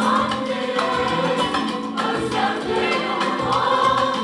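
Mixed choir of men and women singing a Turkish art-music song, accompanied by a small ensemble of clarinet, violin and guitar, with a light regular beat.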